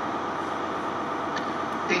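Class 158 diesel multiple unit running steadily as it moves away along the track. A station public-address announcement starts right at the end.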